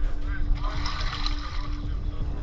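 Floodwater sloshing and splashing around a person moving through it, loudest about a second in, over a faint steady hum.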